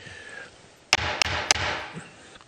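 Three sharp knocks about a third of a second apart, over a second-long burst of rustling noise.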